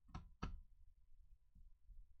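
Two sharp taps about a third of a second apart: a small screwdriver knocking against the open laptop's metal heatsink plate while its hold-down screws are fastened.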